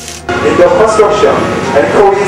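A man's voice over a loudspeaker, loud and continuous, starting suddenly a moment in. Beneath it runs the steady rumble of heavy machinery, the running excavators.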